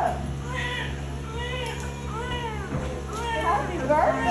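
Newborn baby crying: about four short cries, each rising and falling in pitch, under a steady low hum.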